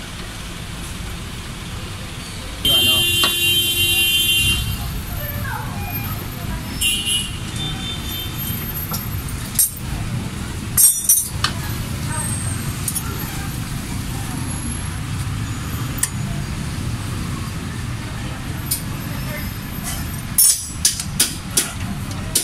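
Steady rumble of street traffic, with a high tone lasting about two seconds near the start and a shorter one later. Sharp metallic clicks of hand tools working on a car's front suspension come around the middle and in a quick run near the end.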